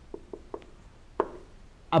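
Dry-erase marker tapping and clicking against a whiteboard while a word is written by hand: a string of short, irregular taps, the loudest a little over a second in.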